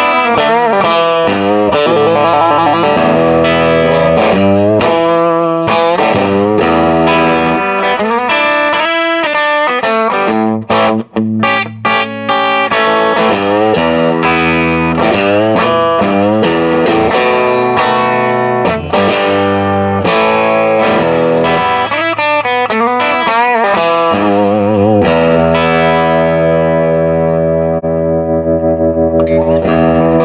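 Telecaster electric guitar played through an all-tube, 20-watt brownface-style amplifier (two 6V6 power tubes, GZ34 tube rectifier) on its bright channel with no pedals. It is miked at a WGS Invader 50 speaker cabinet and plays a continuous run of picked notes and chords, with a brief break about eleven seconds in. Near the end the volume starts to pulse in quick, even waves as the amp's tremolo comes on.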